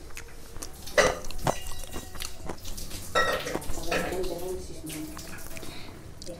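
Eating by hand from a steel plate: fingers working rice against the metal, with mouth and chewing noises and a sharp knock about a second in. A voice talks through part of it.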